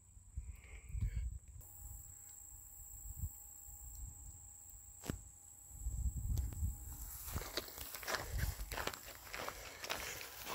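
Footsteps of a person walking: quiet footfalls at first, then footsteps crunching on gravel from about seven seconds in.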